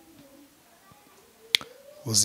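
A quiet pause with a single short, sharp click about one and a half seconds in.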